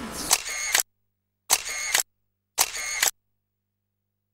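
Three camera-shutter sound effects, each a clicking burst about half a second long, separated by dead silence.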